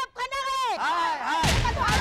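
A crowd of women shouting repeated high-pitched angry cries. About one and a half seconds in, a sudden heavy boom cuts in, and a low rumble of dramatic background music carries on after it.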